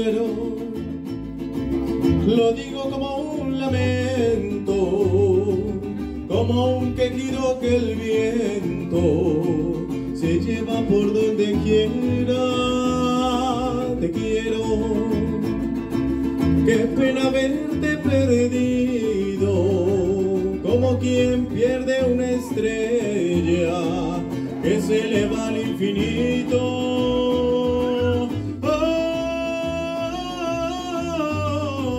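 Mariachi band playing and singing: a male voice sings the melody into a microphone over a plucked guitarrón bass line and strummed guitars.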